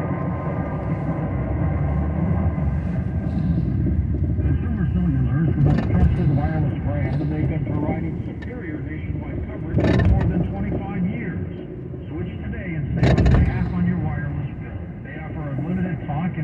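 Talk from a car radio heard inside a moving car's cabin over steady road and engine noise, with two brief louder rushes of noise about ten and thirteen seconds in.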